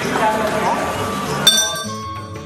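Voices in a crowded hall, then a single bright metallic clink about one and a half seconds in that rings on with several high tones.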